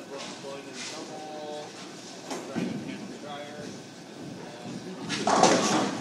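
Bowling alley din: people talking over the rumble of balls rolling on the lanes, with a loud noisy burst near the end.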